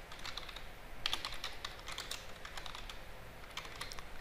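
Computer keyboard typing: a fairly quiet, irregular run of quick key clicks.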